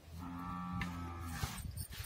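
A cow mooing once, a low steady call lasting a little over a second, followed by a few light knocks.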